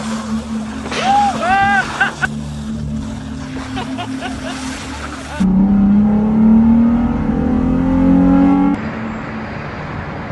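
Vehicle engines running, with a voice calling out a few times about a second in. From about five seconds in, a louder engine note rises slowly for three seconds as a 4x4 pickup drives through slushy, hail-covered ground.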